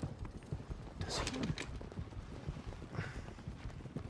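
Horses' hooves clopping as a team pulls a stagecoach: a steady run of low thuds.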